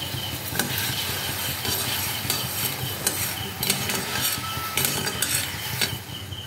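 Metal spatula scraping and stirring sugar syrup in an aluminium kadai on the flame, in repeated irregular strokes, over a steady sizzle of the bubbling sugar as it starts to caramelise for red sweet curd.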